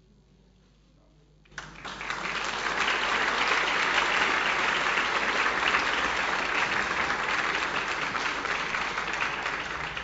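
Near silence, then an audience breaks into applause about a second and a half in and keeps clapping steadily.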